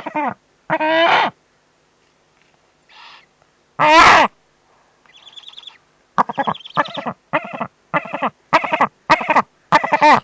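Eurasian eagle owls calling at the nest: short, downward-bending calls, a few at first, one loud call about four seconds in, then a rapid series of about three calls a second from about six seconds on.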